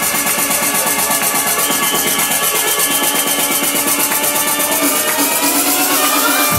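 Electronic dance music played loud over a club sound system, in a build-up: the bass kick drops out and a fast, even drum roll of about eight hits a second runs on, with a rising synth sweep near the end.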